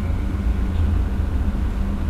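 Steady low background rumble with a faint hum, no speech.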